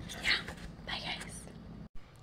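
A woman whispering softly, two short breathy phrases with no voiced tone, cut off abruptly near the end.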